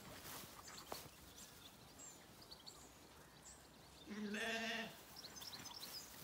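A Zwartbles sheep bleats once about four seconds in: a single wavering call just under a second long.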